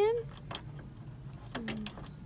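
Small metal clicks as a screw is driven back into a sewing machine's metal needle plate with a screwdriver. There is one click about half a second in and a few quick ticks near the end.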